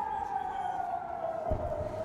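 Civil-defence air-raid siren wailing, one slow wail whose pitch falls steadily and starts to climb again near the end: a warning of incoming rocket fire.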